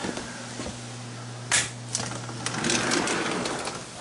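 A door being opened: a sharp clack about one and a half seconds in, then clicks and a rattling slide, over a steady low hum.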